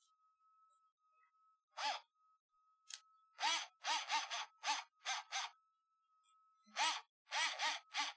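Bosch Go cordless screwdriver driving a small screw into a plastic drag-chain mount in about seven short bursts, each a brief whir that rises and falls in pitch as the motor starts and stops. The screw is being run in snug, not fully tightened.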